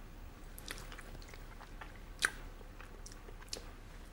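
Someone tasting chutney: faint chewing and mouth sounds with a few small clicks, one sharper about two seconds in.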